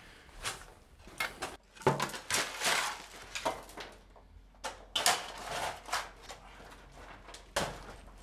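Steel shovels digging into gravel and broken concrete rubble: irregular scraping crunches, roughly one every second.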